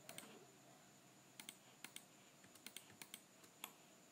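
Faint, scattered clicks of a computer keyboard and mouse, about a dozen at irregular intervals, over quiet room tone.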